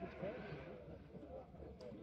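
Faint, distant men's voices calling out on a football pitch, with no crowd noise.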